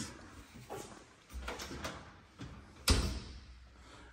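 A few faint knocks and one sharper thump about three seconds in.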